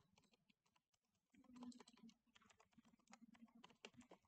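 Faint computer keyboard typing: a scattered run of light key clicks, with a faint low hum joining about a third of the way in.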